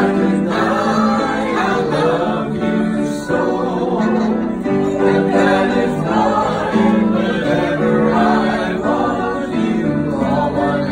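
A man and a woman singing a slow song together, holding long notes.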